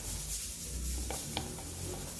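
A thin stick stirring a thick, creamy homemade slime mixture of glue, detergent and talc in a plastic cup, rubbing and scraping against the cup, with two light clicks a little past a second in.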